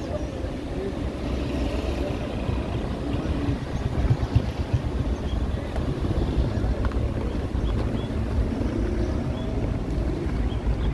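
Low rumble of wind and road noise from a moving car, with louder gusts about four seconds in.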